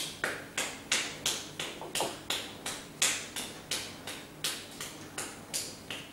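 A rapid, evenly spaced run of sharp taps, about three a second, keeping pace with fast forehand shadow strokes.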